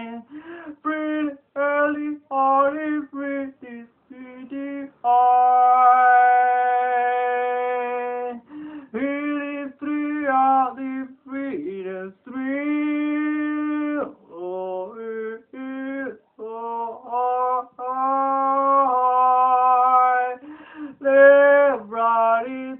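One voice singing unaccompanied: short phrases broken by brief gaps, with a long steady held note about five seconds in and another near the middle.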